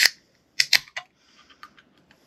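Aluminium soda can handled and its ring-pull tab cracked open: a few sharp clicks and snaps, the loudest right at the start with a short hiss and two more just over half a second in, then lighter ticks.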